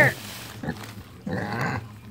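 A pig grunting while stuck inside a black plastic bag, the loudest grunt a little past halfway.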